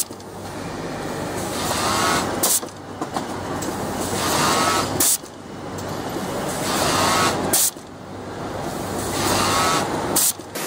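Automated industrial sewing workstation running in quick cycles: a machine run builds for about two and a half seconds, then ends in a short, sharp hiss of compressed air from the pneumatic blowing tube that clears the sewn parts. This happens three times, over a steady electrical hum.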